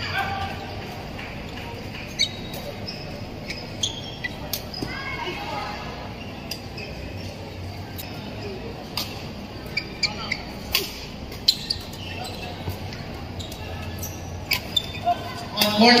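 Sharp, irregular cracks of badminton rackets striking shuttlecocks during doubles rallies, over a murmur of voices in a large sports hall. A public-address announcement starts right at the end.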